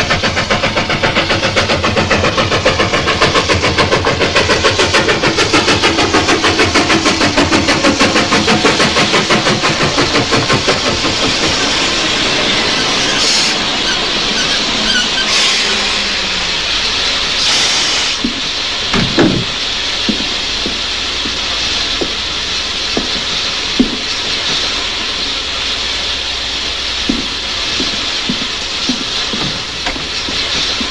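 Steam train sound effects: a fast, even chugging that fades out after about ten seconds, then three short hisses of steam and a few scattered clanks and knocks.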